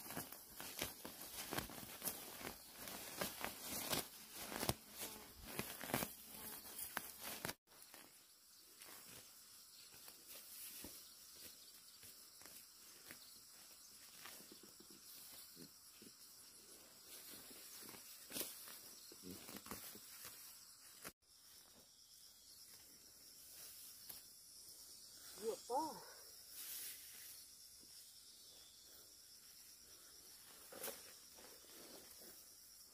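Hand-weeding among upland rice: leaves and stems rustle and weeds tear from the soil in a dense run of crackles for the first several seconds, then fainter and sparser. A short voice-like sound comes near the end.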